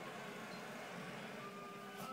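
Steady background noise of a baseball telecast played through a TV speaker, with a faint thin tone for about half a second near the end.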